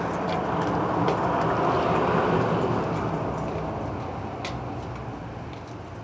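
A road vehicle passing by: a steady rush of engine and tyre noise that swells over the first couple of seconds and then slowly fades away.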